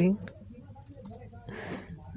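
Computer mouse clicking as the editor's component list is scrolled, faint over a steady low electrical hum.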